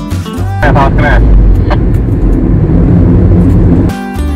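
Loud, steady low rumble of road and wind noise inside a moving Honda Freed. It takes over when background guitar music cuts off about half a second in, with a brief voice just after the cut.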